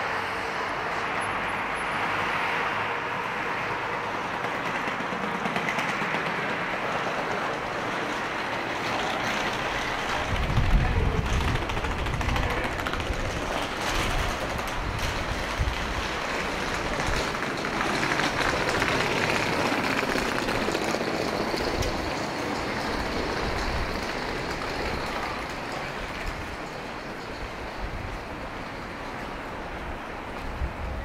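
Night-time city street noise: a steady wash of road traffic heard from an elevated walkway. From about ten seconds in, an uneven low rumble joins it.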